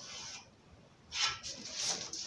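Pencil scratching on paper along a plastic ruler, then the ruler sliding and rubbing across the paper in the second half.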